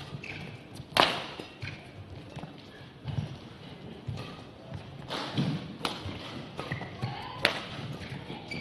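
Badminton rally: sharp cracks of rackets striking the shuttlecock, the loudest about a second in and two more near the end. Between the hits, players' footsteps thud and shoes squeak briefly on the court.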